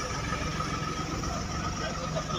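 Steady low rumble of vehicle engines running in a car park, with a faint steady high tone over it.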